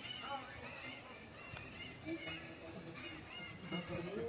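A string of short, high, squeaky animal calls, with a few lower calls among them a little past the middle.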